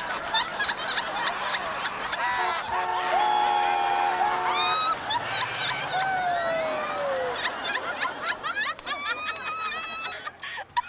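Several people laughing and whooping, with a held note of several steady tones for about two seconds in the middle, then a falling squeal.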